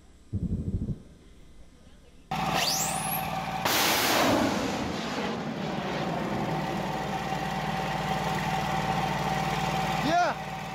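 Antiaircraft rocket launch: a rising whistle, then a loud rushing burst about four seconds in. Under it is a steady drone with a held tone that carries on to the end.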